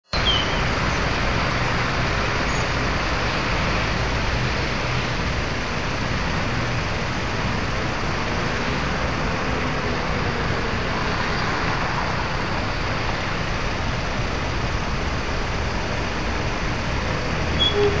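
Steady city-street traffic: cars, a van and buses driving past, a continuous mix of engines and tyres on the road.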